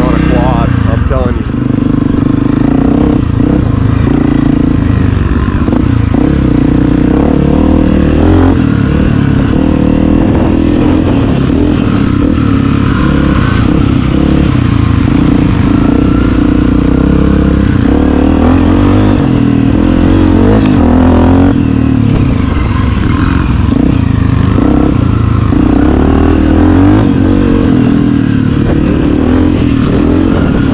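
Honda CRF250F dirt bike's single-cylinder four-stroke engine running steadily as it is ridden along a dirt track, its pitch rising and falling slightly with the throttle.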